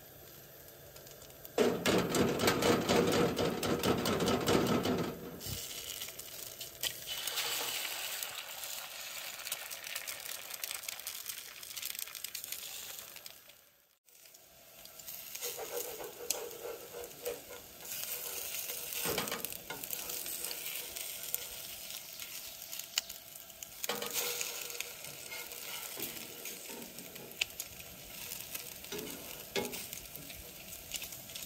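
Bacon and eggs frying in a cast-iron skillet on a Coleman camp stove, sizzling and crackling, with a spatula scraping and clinking in the pan. The sizzle is loudest for a few seconds starting about two seconds in, and breaks off briefly near the middle.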